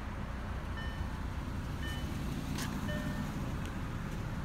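Steady low hum of an idling vehicle engine, with a faint short beep recurring about once a second and a single click about two and a half seconds in.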